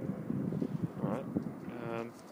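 An indistinct low voice murmuring, ending in a short, drawn-out hum near the end.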